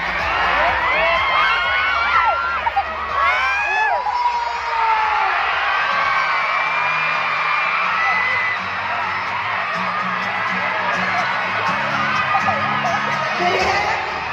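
A crowd of fans screaming and cheering, many high voices overlapping, most intense in the first few seconds, with music playing underneath.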